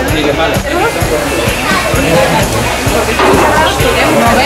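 Background music: a song with singing over a steady beat.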